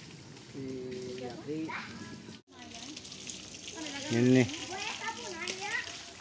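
Spring water running steadily at a small spring-fed pool, a constant hiss with people's voices over it about a second in and again in the second half.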